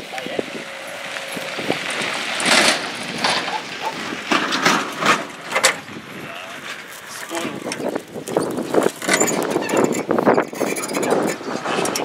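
Irregular metal clanks and clicks from a car trailer being tilted and its hand crank worked to unload a motorised rail dresine onto the track.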